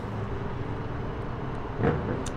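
Steady distant city traffic rumble heard from a rooftop, with one brief louder sound near the end.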